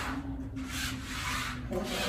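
Rubbing and rustling of bodies and clothing moving against the floor during a full prostration, in three short sweeps, over a faint low hum.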